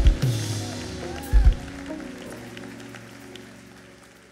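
Live church praise music dying away: a held chord fades out steadily, with two low bass thuds, one at the start and one about a second and a half in.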